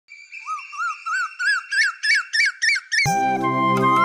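Asian koel calling: a run of about nine short rising whistled notes, each a little higher and louder than the last, over a faint steady tone. About three seconds in, music starts with a low drone, a flute melody and drum beats.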